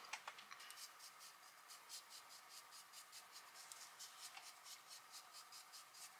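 Faint, scratchy strokes of a small single-blade Tinkle eyebrow razor dragged lightly across dry facial skin, shaving off fine peach fuzz, with several short strokes a second.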